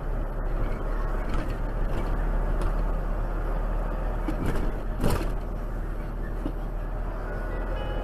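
Steady engine and road noise of a car driving slowly, picked up by its dashcam, with a brief click about five seconds in.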